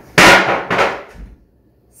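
A person sitting down quickly on a chair: two loud thuds about half a second apart, the first the louder.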